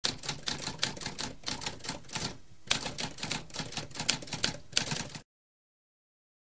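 Typewriter keys clacking in a rapid run of keystrokes, with a short pause about halfway through, stopping abruptly just after five seconds.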